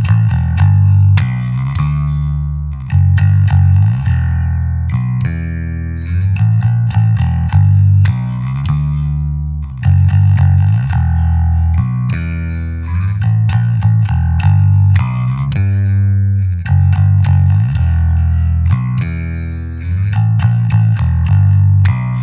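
Mitchell TB500 electric bass played alone through an Ampeg Micro-VR amp: a driving line of quickly repeated picked low notes that moves to a new pitch every second or so.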